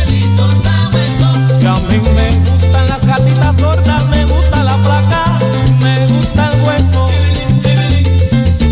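Recorded salsa music: a full band track with a prominent bass line under steady, busy percussion and melodic instrument lines.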